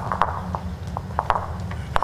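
Footsteps on a portable indoor bowls rink, carpet laid over numbered wooden boards on pallets: a run of light, irregular knocks and clicks over a steady low hum.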